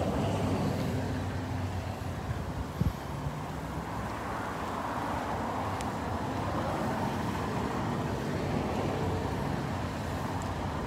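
Steady low hum of a running vehicle engine with outdoor traffic noise, and a single short knock about three seconds in.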